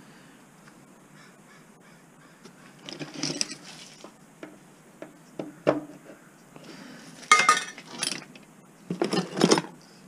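Metal tools and scrap clinking and clattering as they are handled and rummaged through in a bin, in several short bursts starting about three seconds in, loudest near the end.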